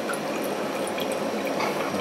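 A thin, lively stream of freshly distilled spirit running from a reflux column's take-off tube into a glass measuring cylinder, a steady trickle with small drips. It is the middle of the hearts run, coming off at roughly three litres an hour.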